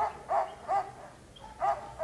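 A dog barking: three short barks in quick succession, then one more near the end.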